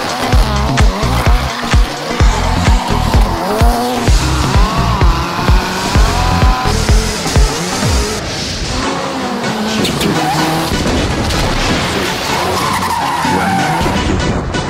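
A Ford Fiesta rally car's engine revving and its tyres squealing as it slides, the pitch rising and falling. This plays over music with a steady thumping beat of about two a second, which drops away about eight seconds in.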